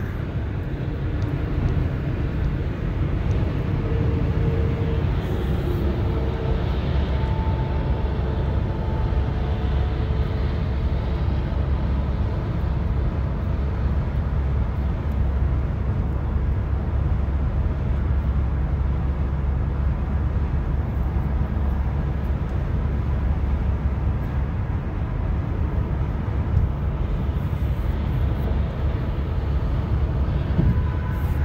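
Steady low rumble of road noise inside a car cruising at highway speed.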